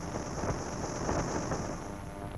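A car running, heard from inside the cabin: a low, noisy rumble with hiss that swells in the middle and eases off near the end.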